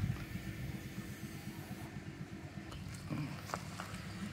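A faint, steady low rumble of a small engine idling, with a few light clicks near the end.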